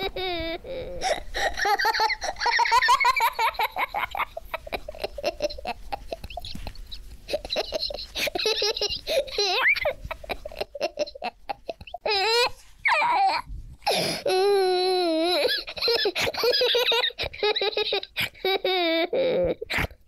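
A young child laughing in long, wavering peals, with bursts of vocalizing and some speech in between.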